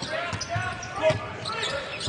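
Basketball being dribbled on a hardwood court, with faint voices in the arena.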